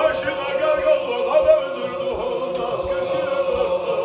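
Men's Qadiri zikr chant: a single male voice sings a winding devotional melody over a group of men holding one steady sustained note.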